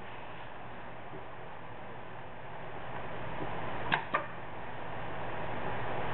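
Hot-melt intermittent wheel coater running with a steady whir that grows louder over the last few seconds. About four seconds in come two sharp clicks, a quarter second apart: the photo-eye-triggered pneumatic doctor blade retracting and returning to lay a patch of glue on the passing product.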